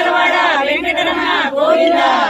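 A group of women's voices chanting loudly together, their long calls rising and falling in pitch.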